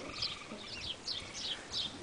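A small bird singing nearby: short, high chirps that each slide downward, repeated about three times a second.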